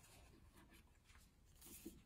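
Near silence, with faint rustling as a book is handled at an open cardboard box, and a slightly louder soft rustle near the end.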